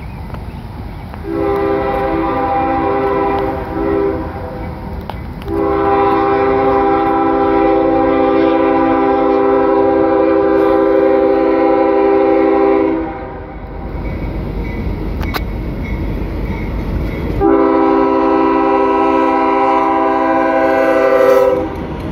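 Air horn of a GE ES40DC diesel locomotive sounding a chord of several tones for a grade crossing. There is a long blast, a short one, a long blast of about seven seconds, and a final long blast near the end. Under and between the blasts the locomotive's engine and the train's rumble grow louder as it approaches.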